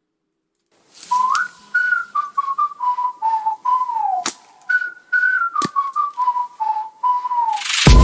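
A whistled tune, a single wavering melody that starts about a second in, with two sharp knocks in the middle. Loud music with a heavy beat comes in at the very end.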